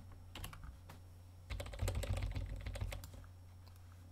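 Computer keyboard keys being pressed: a couple of single taps, then a quick run of key presses lasting about a second and a half, over a faint low steady hum.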